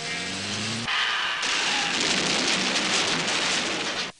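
Lorry driving over cobblestones: its engine note rises for about a second, then a loud, steady rushing noise takes over.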